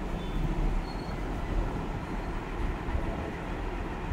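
Street traffic noise: a steady low rumble with a hiss over it.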